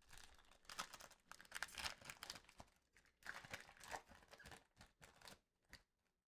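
Foil trading-card pack wrapper being torn open and crinkled by gloved hands: faint, irregular rustles and crinkles that come and go over several seconds.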